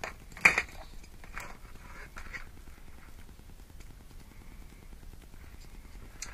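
Hands handling a wire bite trace and heat shrink tubing: a sharp click about half a second in, a few fainter clicks and rustles, then quiet room tone.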